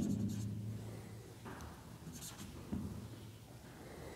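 Faint writing sounds: a few short, soft strokes of a pen or marker on a writing surface, about a second and a half in and again near the middle.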